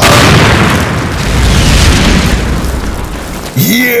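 Cartoon sound effect of a rock cliff blasting apart: a sudden loud boom followed by a rumble of crumbling rock that slowly dies away over about three seconds. A man's voice comes in near the end.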